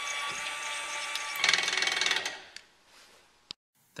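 A 1000 lb electric linear actuator running with a steady whine as it drives the anchor's steel linkage. About a second and a half in it turns louder, with a fast rattling clicking for under a second, then winds down and stops. A single sharp click follows near the end.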